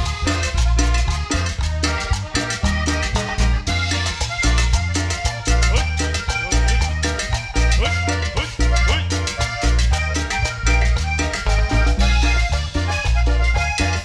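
Live chanchona band playing cumbia: an accordion-led ensemble with congas, bass, electric guitars and keyboard over a steady, driving beat.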